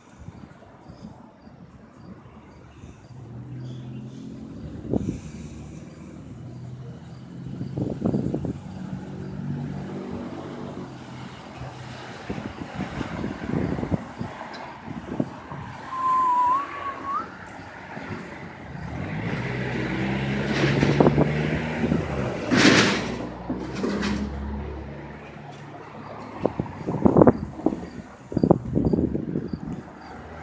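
Road traffic: motor vehicles driving past, their engine sound swelling and fading away twice, with a short high chirp partway through, a sharp burst of hiss about three-quarters through, and a few knocks near the end.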